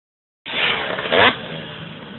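Motorcycle engine revving, with a sharp louder rev about a second in, then running on more quietly. The sound cuts in abruptly about half a second in.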